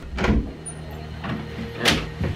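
A door being opened and someone coming in: a short rustling clunk about a quarter second in, and a sharp knock near the end, over a low rumble.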